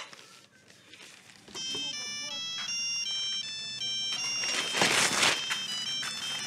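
Mobile phone ringtone: a melody of short electronic notes that starts about a second and a half in and keeps playing. Near the end there is paper rustling over it as the phone is pulled out of a newspaper wrapping.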